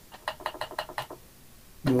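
A quick run of about nine light clicks within the first second, then a pause before a voice.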